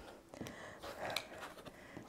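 Faint handling sounds of a quilting ruler and fabric pieces being moved on a cutting mat, with a few light taps.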